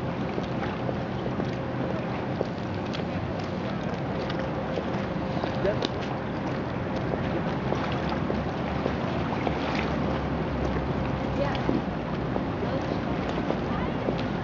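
Steady wind on the microphone over open river water, with a low, even drone underneath and faint voices.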